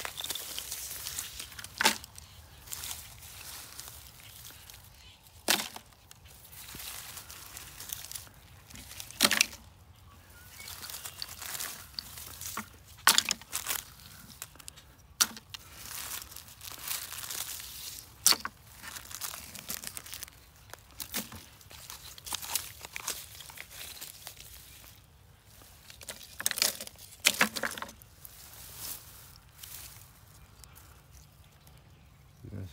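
Hands rummaging through dry grass and dead plant debris full of small plastic litter: rustling and crinkling, with a sharp snap or crack every few seconds.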